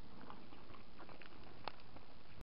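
Steady background hiss with a few faint, scattered clicks, the clearest one near the end.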